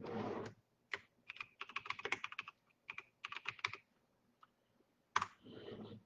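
Typing on a computer keyboard: two runs of quick key clicks, with a short rush of noise at the start and a sharper click followed by a brief rush near the end.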